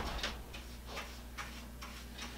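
Paintbrush strokes on a wooden window sash, soft short swishes about two to three a second, over a low steady room hum.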